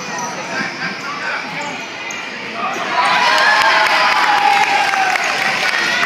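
A basketball bouncing on a hardwood gym court, with voices calling out in the echoing gym; the sound gets louder about halfway through.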